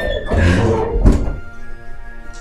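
A few dull thumps, the sharpest about a second in, then soft background music with long held chords comes in.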